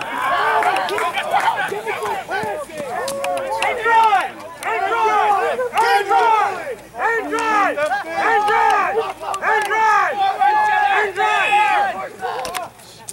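Several voices shouting and calling at once from a rugby touchline, overlapping so that no words come through, with short lulls between bursts of cheering.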